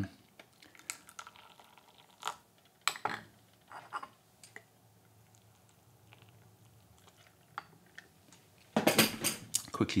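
Porcelain gaiwan lids and cups clinking as they are lifted and set on a bamboo tray, with hot water poured faintly from a stainless steel kettle onto the tea leaves in the gaiwans. Near the end comes a much louder pour as tea is tipped out of a gaiwan into a porcelain cup.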